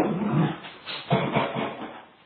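Pet dogs vocalizing at play, a quick run of short, rough sounds that die away near the end, heard through a home security camera's microphone.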